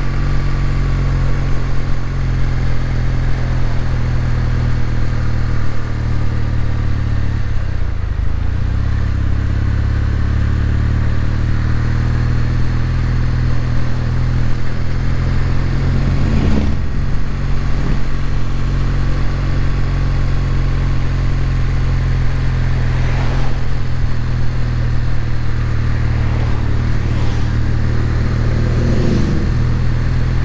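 Kawasaki W800's air-cooled parallel-twin engine running at a steady road speed. The engine note dips and picks back up about eight seconds in. Several oncoming vehicles swish past in the second half, one of them a motorcycle.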